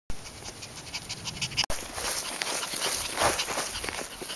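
West Highland White Terrier puppy panting quickly and rhythmically as it runs. There is a short break in the sound about a second and a half in.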